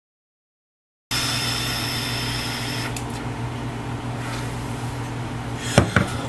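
A person exhaling a big cloud of vapor: a breathy hiss that starts abruptly about a second in, is strongest at first and then fades, over a steady low hum. There is a short click near the end.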